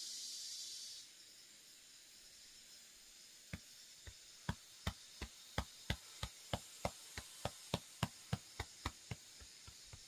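A long in-breath hisses for about the first second. Then a hand pats the upper chest in quick, sharp taps, about three a second, from about three and a half seconds in until near the end: tapping over the lymph ducts during a deep-breathing exercise.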